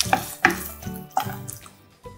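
Spatula stirring mushroom fry in a nonstick frying pan: about four scrapes and clacks against the pan, dying away near the end.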